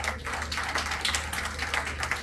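Audience applauding, a dense patter of many hand claps.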